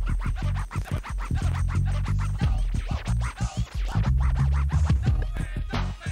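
Hip hop beat with turntable scratching over a heavy bass line, in a break with no rapped vocal.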